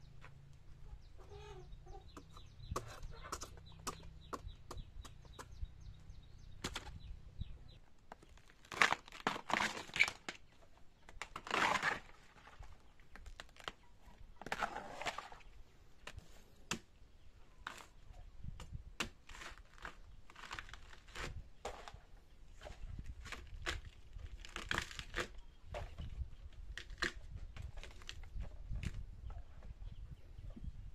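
A machete tapping and slicing into bamboo shoots and their tough sheaths being torn away: a run of irregular sharp clicks and knocks with a few louder rustling tears. Chickens cluck in the background, and a low hum stops about eight seconds in.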